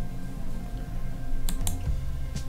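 Computer mouse clicking twice in quick succession about one and a half seconds in, over quiet background music with steady sustained notes.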